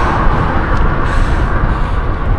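Steady wind noise buffeting the microphone of a camera on a moving road bike, heaviest in the low end.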